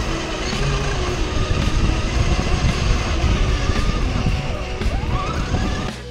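Electric motor and geartrain of a radio-controlled crawler truck running as it drives over gravel, mixed with rock music.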